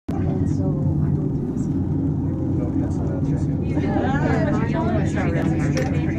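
Steady low hum of an aerial tramway cabin running along its cables. People talk over it from a little past halfway, ending in a laugh.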